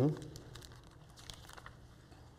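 Faint rustling and crinkling of thin Bible pages being leafed through, with a few light clicks.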